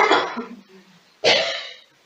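A man coughing twice, close to the microphone: one cough right at the start and a second about a second later, each short and harsh.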